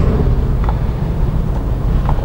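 Steady low rumble of background noise, with a few faint clicks.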